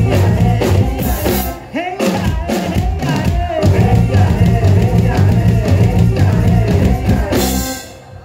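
Live band playing a song: drum kit, hand drums and electric bass under singing. A loud closing crash about seven and a half seconds in ends the song, and the sound drops away sharply.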